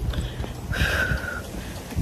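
Wind buffeting the phone's microphone as a low rumble, with a short, high, steady tone about a second in.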